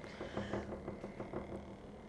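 Small battery-powered DC motor running, spinning a CD: a faint steady hum and whine with a light rapid flutter.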